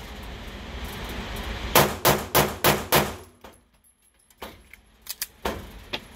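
Five rapid pistol shots, about three a second, from an unported Staccato C2 9mm handgun fired indoors, followed by a few fainter knocks.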